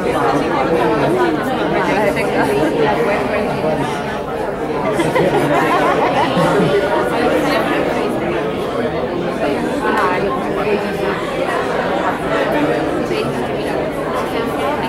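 Many people talking at once in overlapping conversations, a steady babble of voices with no single speaker standing out.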